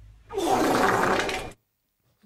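A sound effect played from a podcast soundboard: a dense, noisy sound about a second long that cuts off suddenly.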